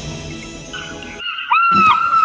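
Quiet background music that cuts to a brief silence just after a second in. At about one and a half seconds the cry of an African fish eagle begins: a loud, clear call that rises, holds and bends down at its end.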